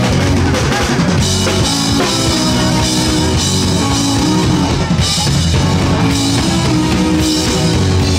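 Live rock band playing loud: drum kit with bass drum and snare, electric guitar and bass guitar.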